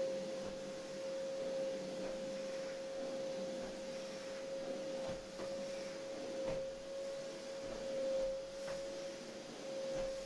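Canister vacuum cleaner running with a steady whine, the nozzle knocking lightly on the floor a few times.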